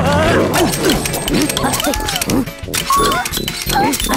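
Wordless cartoon-character squeals and yelps, sliding up and down in pitch, over lively background music, with a few sharp clacks of wooden mousetraps snapping.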